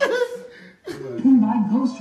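A man's short chuckle, falling in pitch, then a voice starts talking about a second in.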